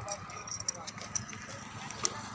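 Indistinct talk of several bystanders, with a few short sharp taps scattered through it.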